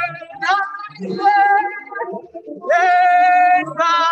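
A woman singing solo in a high voice with vibrato, in short phrases, holding one long, steady high note about three seconds in.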